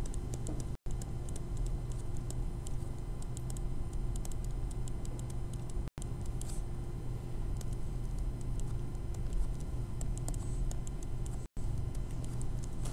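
A stylus tapping and scratching on a tablet screen while handwriting: clusters of light clicks over a steady low electrical hum. The sound cuts out for an instant three times.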